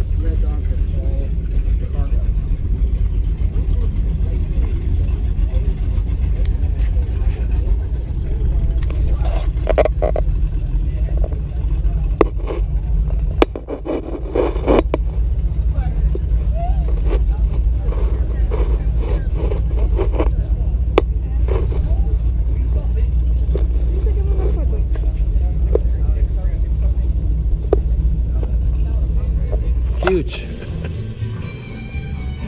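Steady low rumble of wind buffeting an action-camera microphone, with faint voices and a few clicks in the middle.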